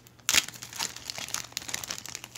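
Clear plastic bag crinkling as it is handled. It starts suddenly about a third of a second in and goes on as a dense run of irregular crackles.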